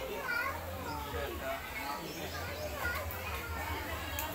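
Several children's voices talking and calling out over one another, with a low steady hum underneath.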